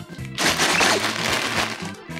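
Crinkling of a plastic LEGO parts bag being handled: a dense crackle that starts about half a second in, over background music.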